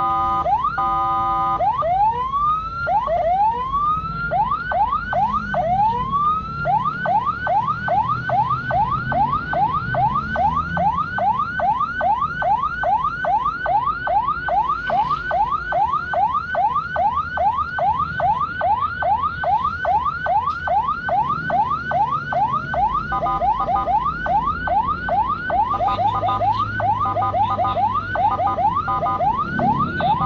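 Ambulance electronic siren switching through its tones: a brief steady stepped tone, then slow rising wails about one a second, then a fast yelp of about three rising sweeps a second from about seven seconds in, turning to a choppier mixed pattern near the end.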